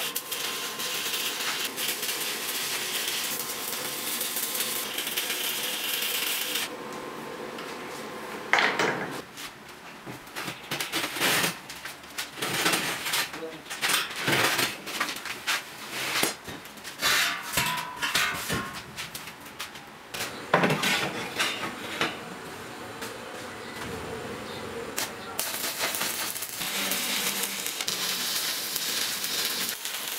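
Arc welding on steel tubing: a steady hiss that stops about seven seconds in and comes back near the end. In between, steel tubes and tools clank and knock irregularly as the frame parts are handled and fitted.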